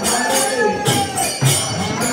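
Devotional kirtan: a voice singing over hand cymbals (kartals) struck in a steady rhythm of about three to four strokes a second, with a drum beating underneath.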